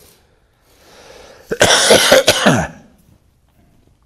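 A man laughing heartily and coughing, in one loud burst of about a second that starts about a second and a half in. The laughs fall in pitch toward the end of the burst.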